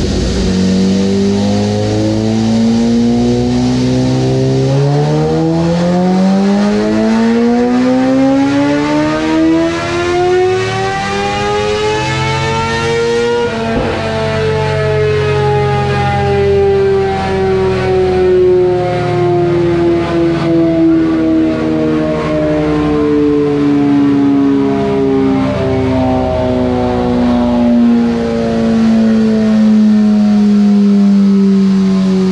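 A 2006 Suzuki GSX-R750's inline-four, breathing through an M4 slip-on with a cat-delete pipe, making a full-throttle dyno pull: the revs climb steadily for about 13 seconds, then the throttle shuts and the engine and roller wind down slowly. It is the baseline run with the bike running too lean, before its ECU is retuned.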